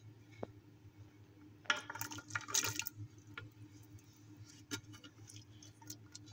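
Chopped green capsicum dropped into the water of a pressure cooker full of soaked lentils, a brief splashing patter about two seconds in, with a couple of light clicks around it.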